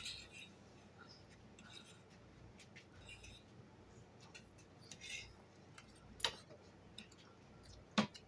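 Quiet eating at a table: a few short, faint clicks and scrapes of forks against plates, the loudest about six seconds in.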